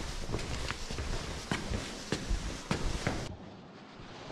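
Footsteps on a stairway, a run of separate steps about two a second, cutting off a little past three seconds in.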